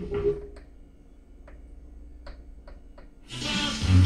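Kenwood KR-9400 receiver being tuned across the radio dial through its speakers: one station drops out, leaving a faint low hum broken by scattered clicks, and about three seconds in another station comes in with music and voice.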